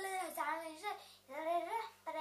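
A young girl singing unaccompanied in drawn-out notes that slide up and down in pitch, with a brief pause just after one second.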